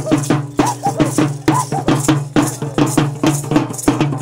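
Parachicos dancers' chinchines (hand rattles) shaken in a steady dance rhythm, about four shakes a second.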